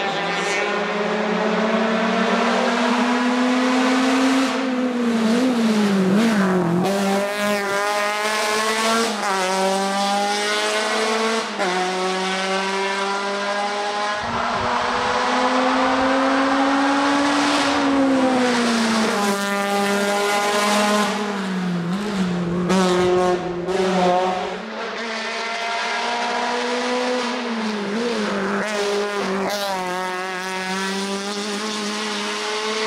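Škoda Fabia FR16 hill-climb race car engine revving hard under full throttle. The pitch climbs again and again and drops sharply at each gear change or lift for a bend.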